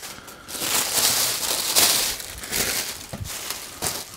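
Tissue wrapping paper crumpling and rustling as it is handled, mixed with the rustle of the jersey fabric being unfolded. It comes in irregular bursts, loudest in the first two seconds.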